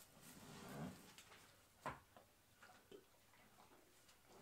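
Quiet barn sounds: soft footsteps and rustling in straw, then a single sharp click just under two seconds in and a few fainter ticks after it.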